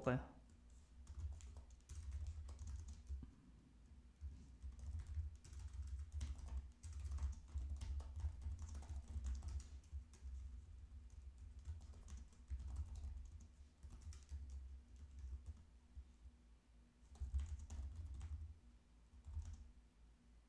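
Typing on a computer keyboard: irregular runs of quiet key clicks with short pauses between them.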